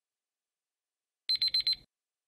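Countdown timer alarm signalling that the time is up: four quick, high-pitched electronic beeps in a short burst just over a second in.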